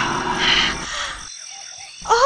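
Frogs croaking with insects chirping, a night-time ambience of frogs and insects. It is louder over the first second and quieter after.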